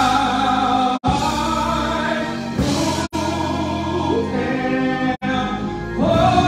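Gospel singing: a man sings into a microphone, holding long notes and sliding between pitches. The sound cuts out briefly three times, about one, three and five seconds in.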